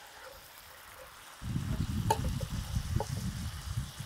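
Trout fillets sizzling faintly in oil in an electric skillet, with a metal spatula clicking against the pan a couple of times. A low rumble comes in about a third of the way through.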